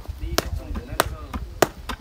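Sharp knocks of wooden rammers pounding earth into the formwork of a rammed-earth wall, in a steady rhythm about every 0.6 seconds. Three strokes fall in these two seconds.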